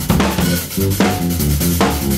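Rock band playing loud: a drum kit's kick and snare hits drive under electric guitars playing a riff.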